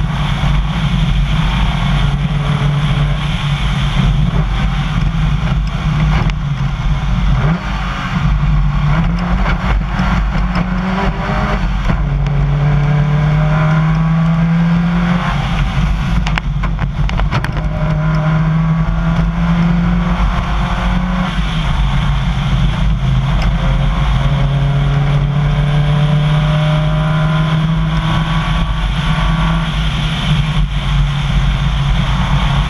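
Rally car engine at full stage pace on a gravel road, repeatedly climbing in pitch and dropping back as it accelerates and shifts gears, over constant tyre and gravel noise. A brief cluster of knocks comes about sixteen seconds in.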